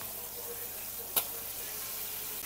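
Diced potatoes and a sauce-dipped chicken drumstick sizzling on a hot electric griddle: a steady sizzle, with one sharp click about a second in.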